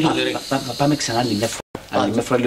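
A person's voice in short, broken, wordless syllables, mixed with hissing.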